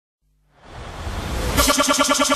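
Opening of a dubstep mix: after a moment of silence, a swelling synth noise rises in, then about a second and a half in a fast stuttering synth pulse starts, about ten beats a second.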